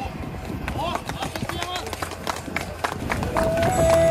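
Scattered clapping from a small group, with a few short voices, then a backing track starts with a steady held note about three seconds in.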